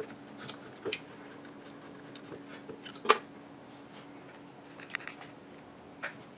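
A few light clicks of a hex key and small metal parts being handled on a CNC router's Z-axis assembly, the sharpest about three seconds in, over a faint steady hum.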